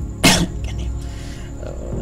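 A single short cough close to the microphone, about a quarter of a second in, over a steady low hum.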